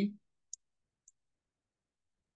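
Two faint computer-mouse clicks, about half a second apart, following the end of a spoken word.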